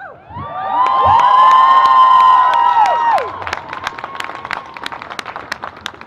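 A crowd cheering and whooping, many voices holding a high shout together, with clapping. The shouting dies away about three seconds in while the clapping carries on.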